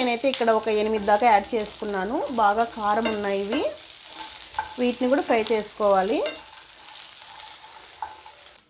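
A metal spatula scrapes around a stainless-steel kadai as peanuts and green chillies are stir-fried in oil. Each stroke squeals with a pitch that dips and rises, about two strokes a second, under the oil's steady sizzle. The stirring pauses briefly a few seconds in and stops about three-quarters of the way through, leaving only the sizzle.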